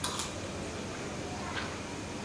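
Faint sounds of someone eating a spoonful of rice: two small clicks right at the start as the metal spoon leaves the mouth, then quiet chewing with a few soft ticks over a low room hum.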